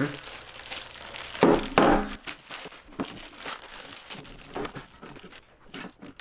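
Thin plastic wrapping crinkling and crackling as it is pulled off desktop speakers by hand, loudest about a second and a half in, then thinning out to scattered crackles.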